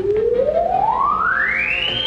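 An electronic comedy sound-effect tone gliding steadily upward in pitch from low to very high, like a theremin or slide whistle.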